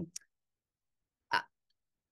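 A woman's mouth sounds in a pause in her speech: the trailing end of a hesitant "um", a small mouth click just after, then one short breath-like sound about a second and a half later, with silence between.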